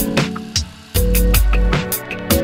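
Background music with a steady beat, drum hits over a sustained bass line and melody notes; it thins out briefly about half a second in and the bass comes back in about a second in.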